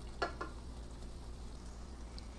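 Faint, steady sizzling of TVP crumbles in a stainless steel skillet as the last of the cooking water boils off. There are two short scrapes of a wooden spoon against the pan within the first half second.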